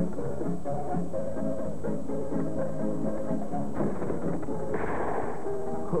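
Background music of sustained notes, with a muffled black-powder gunshot near the end, preceded about a second earlier by a smaller burst of noise. The sound is dull and band-limited, like an old videotape soundtrack.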